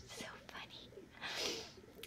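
A woman's soft, breathy whispering voice, mostly air with little tone, the strongest breath about a second and a half in.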